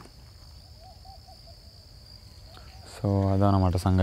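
Steady high-pitched insect drone over a quiet field, with a faint wavering call about a second in; a man's voice cuts in about three seconds in.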